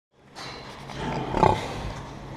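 Domestic pig grunting close to the microphone, fading in at the start and loudest about one and a half seconds in.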